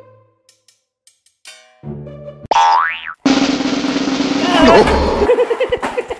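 After a near-silent start, a short low tone and then a fast rising cartoon 'boing' glide, followed by a loud, steady noisy sound with a low held tone.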